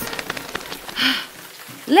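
Rain sound effect: a patter of rain with many small drop ticks, growing quieter after about a second.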